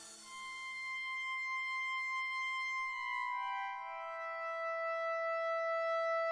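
Quiet background music with no beat: long held notes come in one after another, about a second in and again around three to four seconds in, building up a sustained chord.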